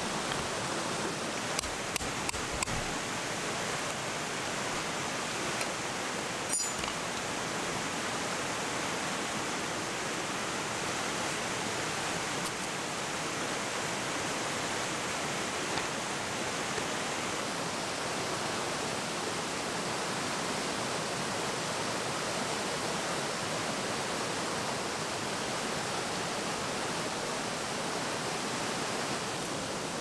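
Steady rush of flowing river water, with a few light clicks in the first few seconds and one more about six seconds in.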